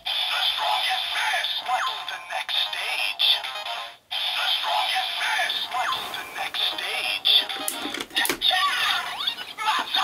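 Bandai DX Gamer Driver toy belt playing the Gashat Gear Dual Another's transformation jingle from its small speaker: electronic music with a recorded voice calling "The strongest fist! What's the next stage?", with a brief break about four seconds in. Near the end a few plastic clicks as the belt's lever is swung open, followed by the call "Mix up!".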